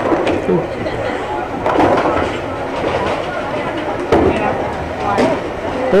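A bowling ball rolling down a wooden lane and striking the pins, over the chatter of people in a bowling alley.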